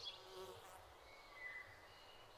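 Faint nature ambience. A brief insect buzz comes in the first half second, and a short, thin bird whistle sounds about one and a half seconds in.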